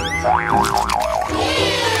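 A comic wobbling sound effect, its pitch sliding up and down about five times in a second, over background music.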